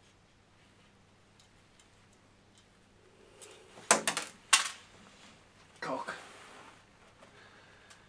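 Two sharp knocks about half a second apart, about four seconds in, as plastic 3D-printer kit parts and a screwdriver are handled, followed by a softer knock; otherwise quiet room tone.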